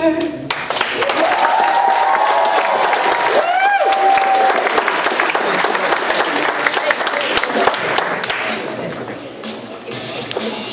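Audience applauding and cheering, with a couple of long whoops in the first few seconds; the applause dies down near the end.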